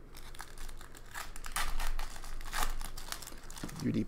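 Foil trading-card pack wrappers crinkling as packs are handled and torn open, in several short bursts.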